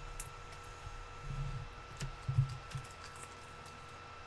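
Trading cards being handled on a table: scattered light clicks and two soft thumps, about a second in and again past the two-second mark, over a faint steady electrical hum.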